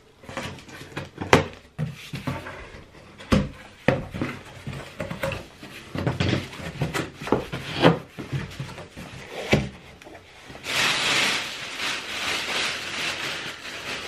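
Scissors cutting packing tape on a cardboard box, with cardboard flaps knocking and bumping as the box is opened. For the last few seconds there is a continuous crinkling rustle as the polka-dot wrapping around the clothes inside is pulled open.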